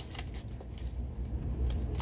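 Faint handling noise from an electric clothes iron being held and pressed down: a low rumble with a few light clicks.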